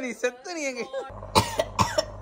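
A woman's voice for about a second, then two short coughs in quick succession.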